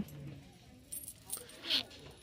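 Faint metallic jingling and clicks of handbag hardware (clasps, rings and zipper pulls) as bags hanging on a store rack are handled, a few light clinks spread through the pause.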